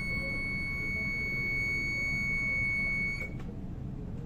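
Soprano saxophone holding one high, steady note for about three seconds, then stopping, leaving only the low murmur of the room.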